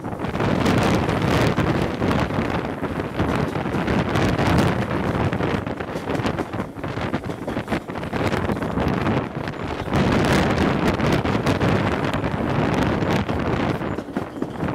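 Wind buffeting a microphone held out of the window of a moving steam-hauled train, over the running noise of the train, the level surging and dipping.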